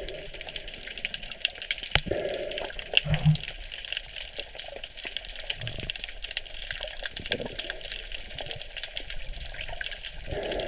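Sea water moving against an underwater camera's housing: a muffled, steady sloshing with many faint scattered crackling clicks and a few low knocks.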